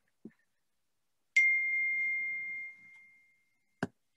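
Phone notification chime: a single high, pure ding that fades out over about a second and a half. A short click follows near the end.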